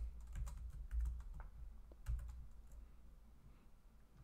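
Computer keyboard typing: a scattering of soft key clicks, thinning out toward the end.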